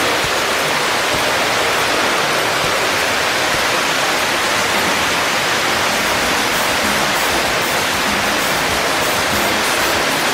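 Steady, loud rushing noise, an even hiss with no distinct events or changes in level.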